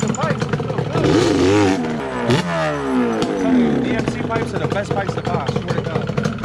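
2006 Yamaha Banshee's twin-cylinder two-stroke engine, fitted with DP expansion-chamber pipes, being blipped on the throttle while stationary. Its pitch climbs and drops in several revs, the sharpest about two seconds in, falling away over the next second.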